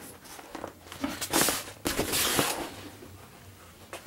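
Cloth flag rustling and flapping as it is unfolded and held up by hand, in two bursts, about a second in and again around two seconds in, with a few small handling clicks.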